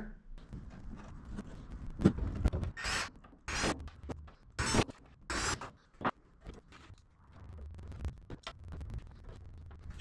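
Workshop handling noises: about five short scraping, squeaky strokes between two and six seconds in, then fainter rustles and light knocks.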